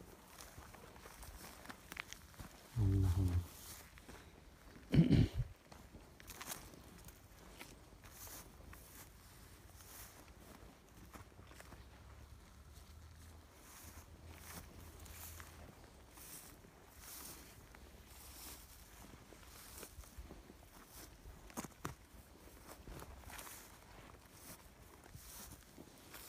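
Footsteps and rustling through dry grass and brush, faint and irregular, with two short bursts of voice about three and five seconds in.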